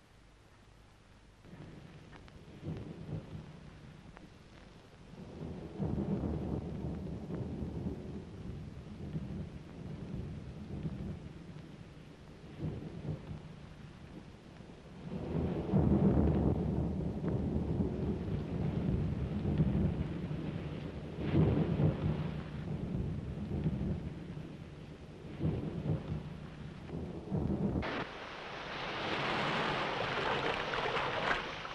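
Storm sound effect on an old film soundtrack: low rumbles of thunder and wind swelling and fading in repeated surges, loudest around the middle. Near the end it gives way to a steady hissing rush like churning water.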